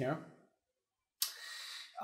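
A man's voice trailing off at the end of a word, then dead silence, then a little over a second in a soft hiss lasting under a second.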